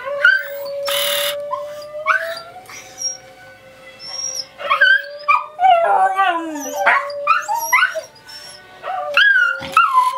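Scottish terriers howling and yipping in rising and falling glides, answering a long held sung note from opera singing played on a laptop. There is a short sharp noisy burst about a second in.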